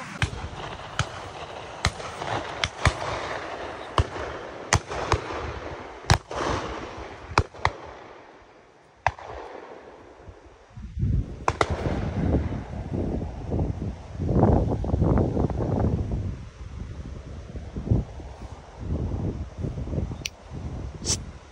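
Shotguns firing on a driven shoot: a quick run of about a dozen sharp shots over the first nine seconds, some coming in close pairs. After that, rough low buffeting from wind on the microphone fills the rest, with a couple more shots.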